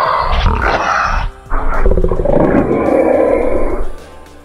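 Two loud lion roars, the second starting about a second and a half in and lasting longer than the first.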